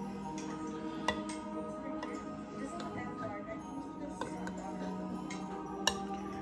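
Soft background music with steady held tones, over which a metal fork clinks sharply against a bowl twice, about a second in and again near the end.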